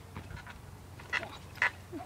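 Trampoline springs squeaking twice, about half a second apart, as the jumper pushes off the mat.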